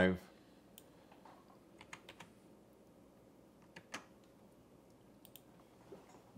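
A few sparse, sharp computer keyboard keystrokes and clicks, spread unevenly over several seconds against a quiet room.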